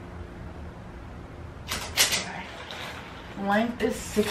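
Handling noise from measuring a wooden dresser with a tape measure: a brief rustle and a sharp knock about two seconds in. A short wordless voice sound follows near the end.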